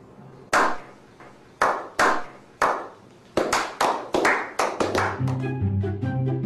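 Hand claps in a slow clap, each ringing out: about one a second at first, then faster and faster. Music with a bass line comes in about five seconds in.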